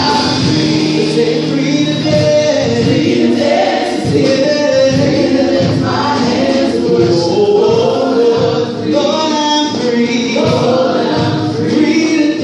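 Gospel vocal group singing into microphones: a man's lead voice with several women's voices, in long held phrases.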